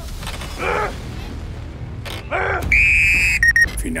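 Two short shouts of encouragement, then an electronic tone held for under a second and a few brief high beeps: the show's timer sound marking the finish of the run.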